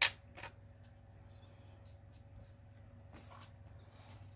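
A sharp tap of a small hard object on the craft table, followed by a softer tap about half a second later, as small crafting tools are handled; a faint paper rustle comes about three seconds in.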